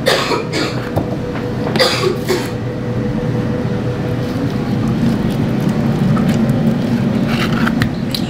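Two short coughs, one at the start and one about two seconds in, over the steady whir of a running kitchen appliance's fan that grows louder as the seconds pass.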